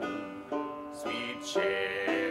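Five-string banjo picked in the key of G, a run of plucked notes about two a second.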